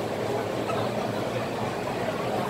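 Steady, even background noise of a packed metro platform, with a train standing at it with its doors open and a crowd murmuring around it.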